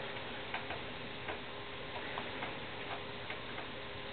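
Faint, light clicks at an uneven pace, about two a second, over a low steady background hum.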